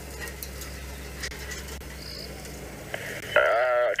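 Night bush ambience: a low steady hum under a faint hiss, with a short high chirp about two seconds in and a few faint clicks. A voice says "uh" near the end.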